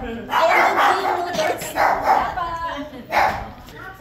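People talking, with a dog barking and yipping now and then.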